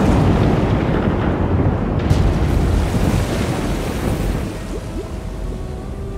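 Loud rumbling crash sound effect that starts suddenly, with a second sharp burst about two seconds in, then fades away. Faint music comes back in near the end.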